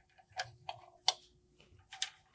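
A few small, sharp metal clicks, the loudest about halfway through, as a nozzle is handled and screwed onto the front of a MIG spool gun.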